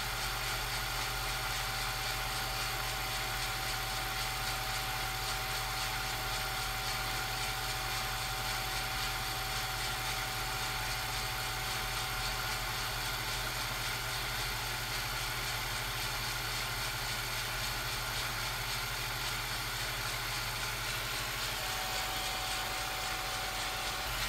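Steady low hum and hiss with a faint constant high whine, the noise floor of an old silent 16mm film's transfer to tape. No sound event stands out, and the whine weakens and comes back near the end.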